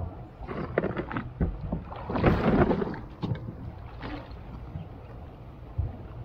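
Water slapping and splashing against the hull of a small fishing boat, with wind on the microphone and a few light knocks; the biggest splash comes about two seconds in.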